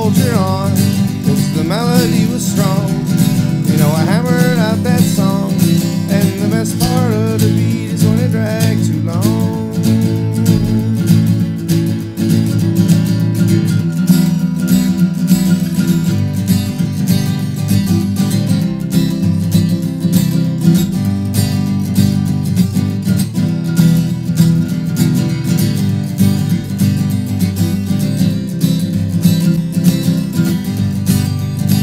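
Steel-string acoustic guitar strummed steadily in a country-folk rhythm through an instrumental break. A wavering melody line rides over the chords for about the first nine seconds, then stops, leaving the guitar alone.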